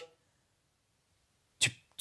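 A pause in a man's speech: near silence, then one short, sharp intake of breath near the end.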